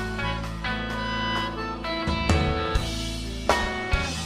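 Live blues-rock band playing an instrumental passage: electric guitar, bass and drum kit, with harmonica held over it in long notes and drum hits punctuating it.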